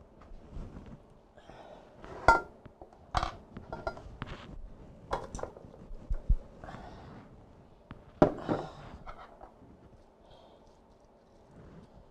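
Clinks and knocks of a spoon, a ceramic mixing bowl and a glass baking dish as a diced sweet potato and apple mixture is scraped and tipped into the dish. About a dozen sharp clinks: one rings briefly about two seconds in, and the loudest comes a little after eight seconds.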